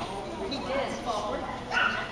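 A dog gives a short, sharp yip near the end, over women's voices.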